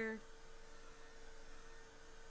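Faint steady hum and hiss of a handheld heat tool blowing hot air to dry a watercolour painting.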